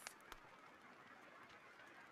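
Near silence: faint steady rain in the background, with a soft click shortly after the start.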